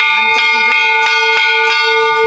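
Large hanging temple bell struck several times by its clapper, its clear metallic tone ringing on between strokes.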